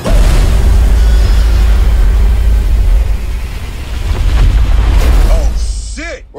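Cinematic explosion: a loud boom hits right at the start and runs on as a deep rumble for about five seconds, easing slightly partway through, before fading near the end.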